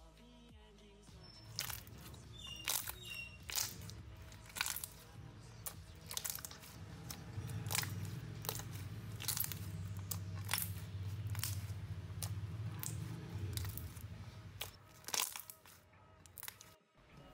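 Thick clear slime being squeezed and pressed by hand, air bubbles trapped in it popping in sharp clicks and crackles at irregular intervals.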